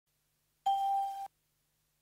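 A single electronic beep: one steady mid-pitched tone, a little over half a second long, that starts and stops abruptly.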